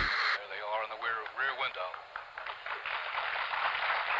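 Thin, narrow-band speech from an old television news broadcast, opening with a short burst of static.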